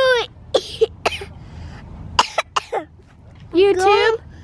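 A young boy's voice: a high sung note breaks off at the start, followed by several short, sharp breathy bursts like little coughs over the next two seconds, then his high singing voice starts again near the end.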